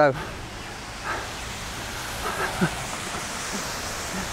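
Steady hiss of drizzle and wet-road outdoor noise on a small camera microphone, with a few faint, brief vocal sounds from the man holding it.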